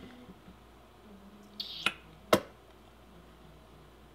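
Two sharp clicks about half a second apart, with a brief hiss just before the first, against quiet room tone.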